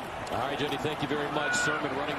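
Several men's voices calling and shouting on a football field at the snap, picked up by the broadcast's field microphones, with a few knocks mixed in.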